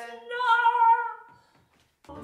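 A woman singing one held, unaccompanied high note with a slight waver for about a second and a half, then stopping.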